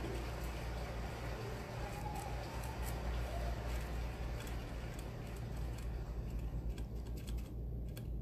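Irregular light clicks and taps from a RAW cigarette-rolling machine being stuffed with ground flower by hand, over a steady low hum.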